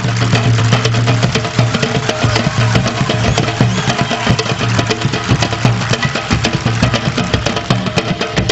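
Uruguayan candombe played by an ensemble: chico and repique drums keep a dense run of sharp strokes, with piano and violin and steady low notes underneath.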